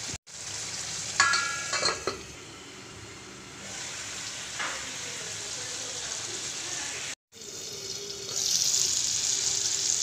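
Chicken curry sizzling in a frying pan, with a few ringing metallic clinks a little over a second in. The sizzle cuts out briefly twice and grows louder and hissier near the end.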